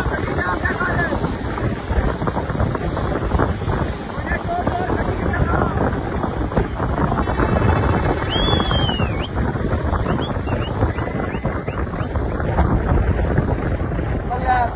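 Steady wind buffeting the microphone of a vehicle moving at highway speed, over rumbling road and engine noise, with people's voices mixed in.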